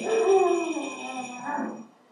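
A struck metal percussion instrument still ringing and fading, under a drawn-out wordless voice that glides down in pitch, rises again, and stops shortly before the end.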